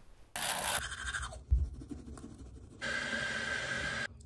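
Teeth being brushed with a toothbrush: a steady scrubbing in two stretches, the second starting near the end.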